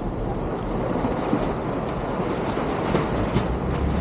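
Motor cruiser under way: its engines running steadily under a rush of water along the hull from the bow wake.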